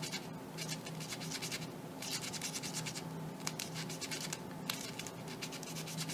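Balsa-wood prop spar scratching against the sandpaper of a tapered-slot sanding tool as it is worked in and out and turned, in irregular faint strokes with a few sharp ticks. It is a harder piece of balsa than usual and still grabs in a few spots.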